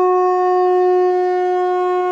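Conch shell (shankh) blown in one long, steady note rich in overtones, held without a break.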